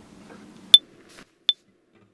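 Electronic metronome count-in at 80 BPM: two short, high beeps three-quarters of a second apart, the first one louder as the accented beat.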